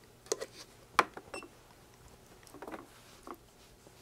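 Faint clicks and taps of hands working a FNIRSI DSO-TC3 component tester: seating a transistor in its ZIF socket and pressing its buttons. A short, high beep from the tester sounds about a second and a half in.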